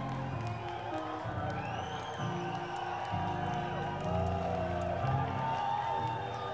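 Live rock band playing: a bass line steps between notes about once a second under sustained, bending guitar lines.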